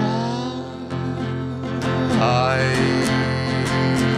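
Acoustic guitar strummed steadily, with a man singing a long held note, "I", that starts about halfway through.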